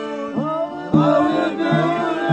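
Several men singing a folk song together to a button accordion. The singing drops back briefly, then the voices come in strongly about a second in over the steady accordion chords.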